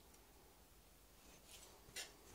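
Near silence: room tone, with a faint scraping near the end as a boning knife trims a venison rib rack.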